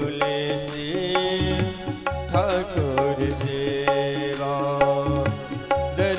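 Devotional bhajan music: a Roland XPS-10 keyboard playing a sustained melody over a steady tabla rhythm, with deep bass-drum strokes from the tabla pair under it.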